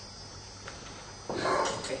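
A pause between speakers: low hiss with a faint, steady high-pitched whine. A person's voice starts suddenly about a second and a half in.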